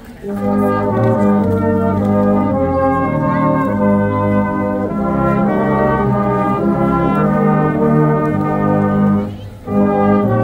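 A brass band of cornets, tenor horns and euphoniums playing a slow piece in held chords. The music breaks off briefly at the very start and again about a second before the end, between phrases.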